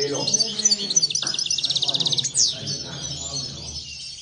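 Caged European goldfinches singing: bright, tinkling twitters, with a fast trill of rapidly repeated notes about a second in and a sweeping note just after.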